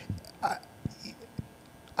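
A pause in a man's speech into a handheld microphone: a brief hesitant "I" about half a second in, then a low gap with a couple of faint clicks before he goes on talking.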